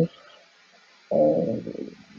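Speech only: a brief pause, then a woman's drawn-out hesitation 'euh' about a second in, fading out.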